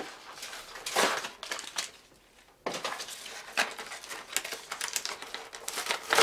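Paper rustling and crinkling with small plastic clicks and taps as toilet-paper-wrapped toy capsules are unwrapped and opened by hand. The sound dies away briefly a little after two seconds in, then comes back as rapid light clicking and crinkling.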